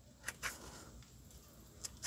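A few faint, short clicks from small hand pruning snips being handled and set against a butterfly bush cutting's stem: two close together about half a second in, and one more just before the end.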